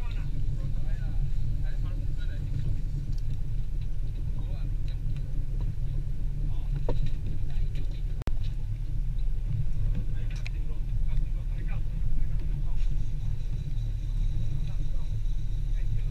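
Steady low rumble of wind buffeting the camera microphone on an open boat at sea, with faint voices and small clicks of fishing tackle over it.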